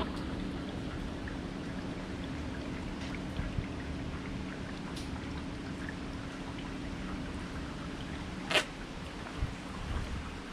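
Scattered drips of rainwater over a steady low hum, with one sharp tap about eight and a half seconds in.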